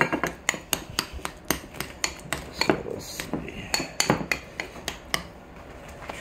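Metal spoon mashing avocado in a bowl, clinking and scraping against the bowl in a run of irregular clicks that thin out near the end.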